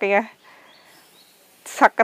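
A woman's voice, close to the microphone, ends a phrase in the first moments, followed by a pause with only faint outdoor background. Her voice starts up again near the end.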